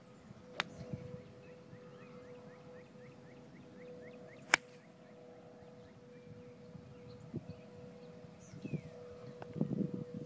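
Golf iron striking a ball off turf: one sharp, loud crack about four and a half seconds in, with a smaller click about half a second in.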